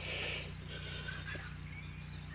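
A man breathing hard from exertion, with one forceful, noisy exhale in the first half second, over a steady low hum.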